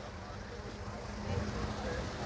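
Outdoor background noise: a low, steady rumble with a faint constant hum and faint distant voices.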